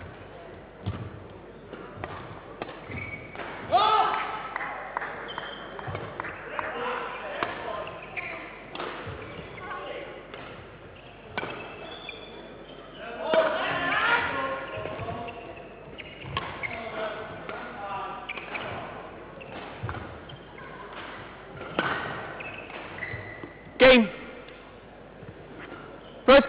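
Badminton rally in a large sports hall: repeated sharp racket strikes on the shuttlecock and players' footwork on the court, with voices around the court. One very loud sharp sound near the end stands out above the rest.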